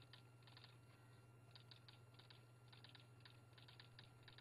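Near silence: a low steady room hum with faint, irregular clicks.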